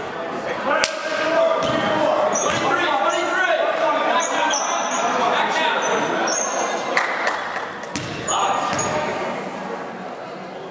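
A basketball bouncing a few times on a hardwood gym floor, heard as sharp knocks, under indistinct chatter from players and spectators that echoes in a large hall.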